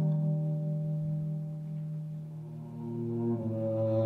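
Recorded song played over Børresen M3 loudspeakers, an Audio Group Denmark system: an instrumental gap between sung lines, with a held low chord that dips in level midway and moves to a lower bass note about three seconds in.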